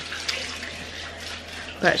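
Steady rushing background noise with a low hum underneath, in a pause between a woman's words; her voice comes back near the end.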